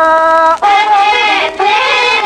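Traditional Tashelhit Amazigh rways song from an old recording: a sung melody in long held notes over string accompaniment. It holds one note, breaks briefly about half a second in, then moves on to another held note.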